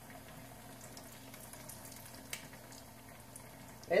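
A breaded cod fillet frying in hot oil in a pan, a faint steady sizzle, with one light click a little past halfway.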